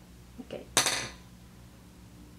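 One sharp clink with a brief ring just before the middle, led by two soft knocks: makeup tools, a brush and palette, being handled while the brush is reloaded with eyeshadow.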